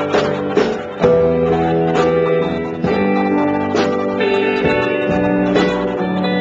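Live rock band playing: electric guitars hold ringing, sustained chords over sharp drum hits, with no singing heard.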